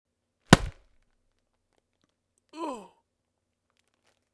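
A sharp smack or thump about half a second in, then about two seconds later a short groan or sigh from a person's voice, falling in pitch.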